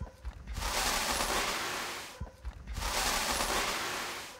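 Granular fertilizer poured from a collecting tray into a bucket, two long rushing pours, each swelling and fading over about a second and a half, with a brief gap and light knocks between them. The pours are part of a calibration test of a front-tank fertilizer metering unit.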